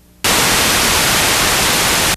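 Loud burst of television static, an even hiss that starts suddenly about a quarter second in.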